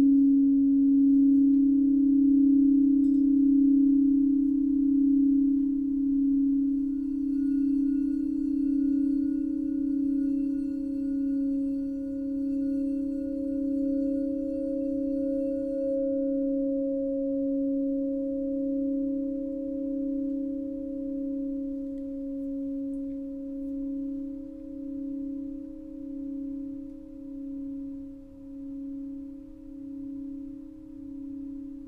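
Alchemy crystal singing bowls, a 432 Hz endocrine set, ringing together in a low sustained chord that wavers in slow beats. A fainter, higher ringing joins for several seconds in the middle. The whole chord then slowly dies away, the beats growing more distinct as it fades.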